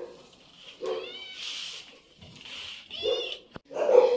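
Kittens meowing: two short, high-pitched meows, about a second in and again near the end, followed by a single sharp click.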